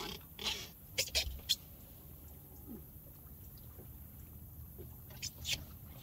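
A few short knocks and clicks of handling at a boat's live well as a bass is taken out: a cluster in the first second and a half and two more near the end, over a faint low rumble.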